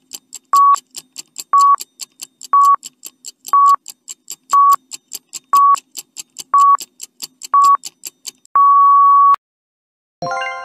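Countdown timer sound effect: a short beep once a second over fast ticking, about four ticks a second, ending in one longer beep near the end.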